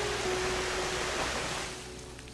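Waterfall: rushing, splashing water as a steady noise that eases off near the end, with soft background music underneath.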